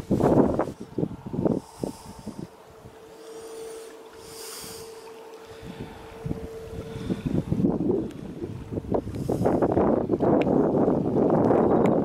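Strong wind buffeting the camera microphone in gusts, then building into a loud steady rush from about two-thirds of the way in. A faint steady hum is heard during the quieter middle stretch.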